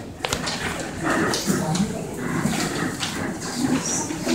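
Low, indistinct voices of a seated audience, with a few small knocks and rustles.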